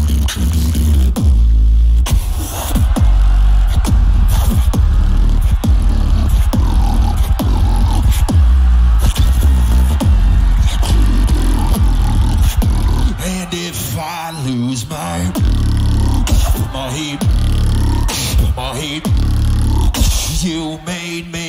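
A beatboxer's solo routine: a deep, buzzy lip-buzz bass held under sharp snare and hi-hat clicks. The bass breaks off briefly about two seconds in and several times in the second half, where pitched vocal sounds come through.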